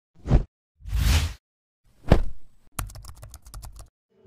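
Edited intro sound effects: a thump, a whoosh, a sharp hit, then a rapid run of about a dozen typing-like clicks, with dead silence between them.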